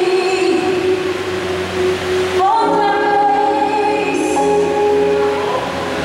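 A woman singing a gospel solo into a microphone over low sustained instrumental backing: a long held note, then a new phrase entering on a higher note about two and a half seconds in.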